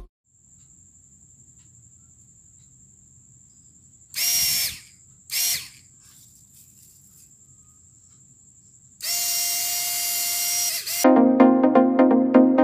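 Mini drone motor and propeller of a homemade PVC-pipe pocket fan, switched on by a push button: two short runs of about half a second each, a little after four seconds in, then a steady run of about two seconds. A steady-pitched whine rides on the rush of the blades. Electronic background music starts near the end.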